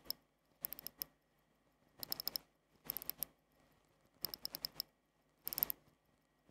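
Seagull ST3621 hand-wound watch movement being wound at the crown: the click ratcheting over the ratchet wheel in short bursts of quick, sharp clicks, roughly one burst a second.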